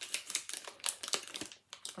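Foil-lined paper wrapper of a chocolate bar crinkling as it is handled: a run of quick, sharp crackles with a short lull near the end.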